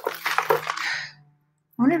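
A woman's breathy laugh, over a faint steady hum from lawn mowers working outside; speech resumes near the end.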